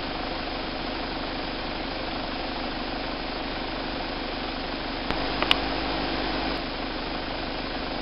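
A vehicle engine idling, a steady hum. About five seconds in there are a couple of sharp clicks and a brief rise in low rumble.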